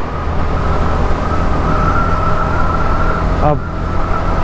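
Motorcycle riding at speed: the engine is running steadily under a heavy low wind rumble on the microphone, and a steady high whine grows stronger for about two seconds in the middle.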